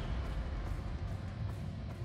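Dramatic orchestral-style documentary score, heavy and steady in the deep bass like a continuous rumble.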